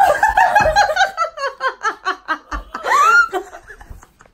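A fit of loud, hearty laughter in quick pulses, falling in pitch over the first second or so. A second loud burst about three seconds in rises in pitch to a high squeal.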